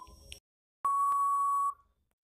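Quiz countdown timer sound effect: a short tick right at the start, the last of ticks coming once a second, then a single long steady beep about a second in, lasting nearly a second, signalling that time is up.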